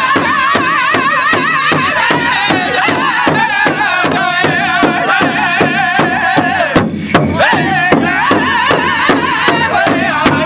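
Pow wow drum group singing in unison over a steady beat struck together on a large rawhide powwow drum, about three beats a second. The voices waver up and down and break off briefly about seven seconds in, while the drumbeat keeps going.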